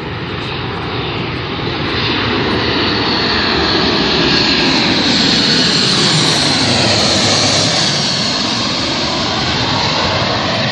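Ryanair Boeing 737 on final approach passing low overhead: its jet engine noise builds, is loudest as it passes over about five to seven seconds in, with tones sliding down in pitch, then eases a little as it moves away toward the runway.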